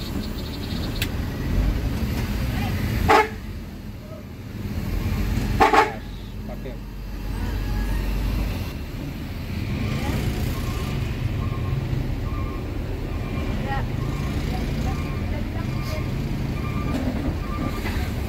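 Diesel bus engine running low in slow stop-and-go traffic, heard from inside the cab, with a surge of engine rumble between about four and eight seconds in. Two brief sharp sounds stand out about three and six seconds in.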